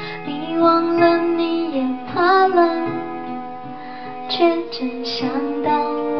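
A woman singing a slow song live into a microphone, holding long notes with gliding pitch, accompanied by a fingerpicked acoustic guitar.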